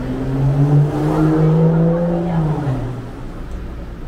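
A motor vehicle driving past on the street beside the walkway. Its engine note swells to its loudest about a second in, then drops in pitch and fades away by about three seconds in.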